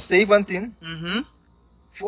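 A voice speaking for about a second, then a short pause. A faint, steady, high-pitched whine runs underneath.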